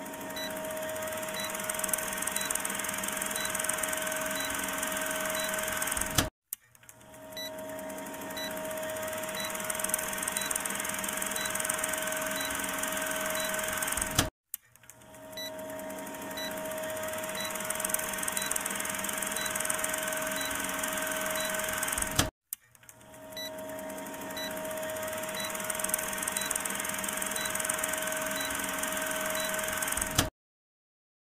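An edited-in sound loop repeating about every eight seconds, four times. It is a steady machine-like hum and whir with light ticks about twice a second, fading in each time and cutting off abruptly.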